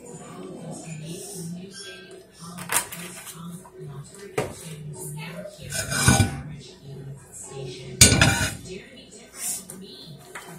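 Frying pan knocking and scraping on a gas stove's grate as it is moved and tilted to spread freshly poured cooking oil: a few sharp metal knocks, the loudest about eight seconds in.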